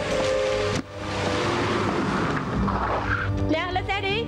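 Background music that cuts off abruptly about a second in, followed by the loud rush of a car braking hard with a tyre screech as it stops. A woman shouts near the end.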